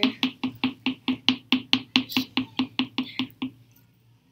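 A plastic glitter jar held upside down over the mouth of a plastic water bottle is shaken, tapping against the bottle about five times a second to get glitter out. The tapping stops about three and a half seconds in.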